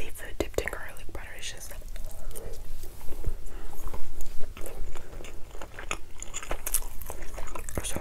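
Close-miked chewing and wet mouth sounds of someone eating soft ravioli, broken by many short, sharp clicks.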